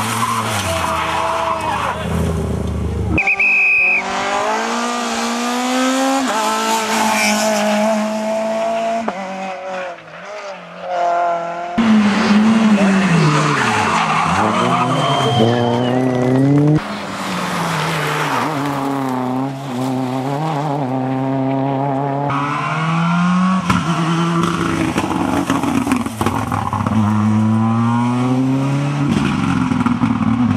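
Rally car engines at full throttle, the revs climbing and dropping sharply through gear changes as one car after another drives past; the sound changes abruptly several times where short clips are joined.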